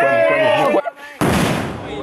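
Young people's voices calling out, then about a second in one loud firecracker blast that dies away over about half a second.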